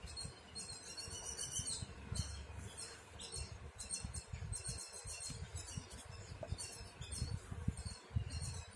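Embroidery thread being pulled through cotton fabric stretched taut in a wooden hoop: several short, faint scratchy rasps, with low bumps from hand handling.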